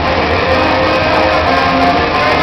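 Steady background noise of a crowded indoor shopping mall, with a faint murmur of spectators' voices and no clear single sound.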